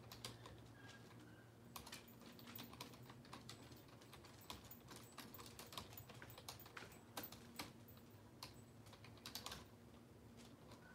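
Faint typing on a computer keyboard: irregular runs of soft key clicks.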